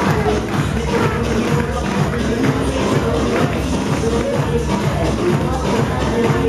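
Loud music with a steady beat played over a DJ's PA speakers.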